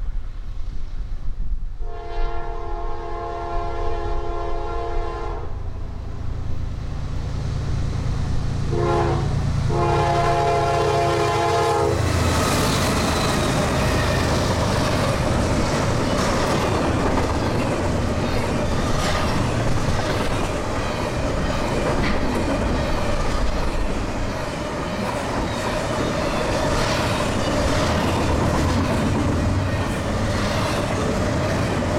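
A freight locomotive's multi-chime air horn sounds a long blast, then a short one and another long one, as the train closes in on the grade crossing, over a building diesel rumble. From about 12 s the train is alongside: the steady rolling roar and wheel clatter of double-stack intermodal cars going by at speed.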